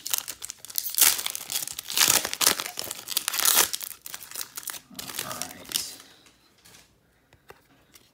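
Foil wrapper of a small hockey card pack being torn open and crinkled, loudest in the first four seconds, then fading to faint handling of the cards.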